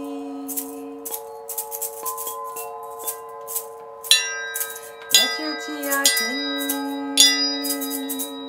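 Tuned hanging chime bars ring on in long overlapping tones. They are struck again with a mallet three times in the second half. A hand rattle is shaken in quick rhythmic bursts throughout, and a low chanted note is held over the chimes.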